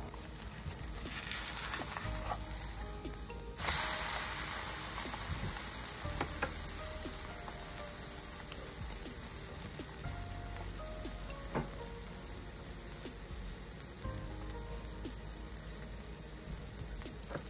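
Egg and corn omelette sizzling in oil in a frying pan; the sizzle gets suddenly louder about three and a half seconds in, with a few light clicks here and there.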